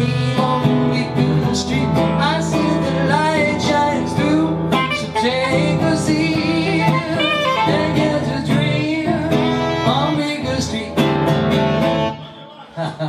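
Live saxophone and acoustic guitar playing together: the saxophone carries a melody with bending, wavering notes over steady strummed guitar.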